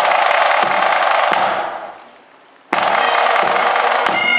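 Pipe band snare drums playing a roll-off with bass drum strokes: a long roll that dies away about two seconds in, then a second roll starting about a second later. These are the rolls that bring the bagpipes in.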